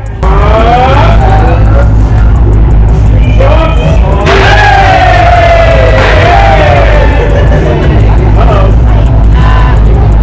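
Loud amplified music with a heavy, steady bass and a singing voice sliding between notes over it, kicking in suddenly at the start.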